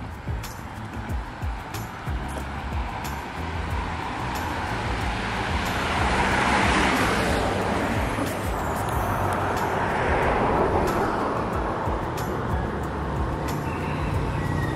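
Background music over street traffic, with the hiss of passing vehicles swelling twice, once around the middle and again a few seconds later.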